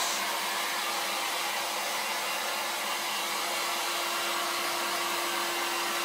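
800-watt electric heat gun running steadily, blowing hot air in an even rush with a steady motor hum.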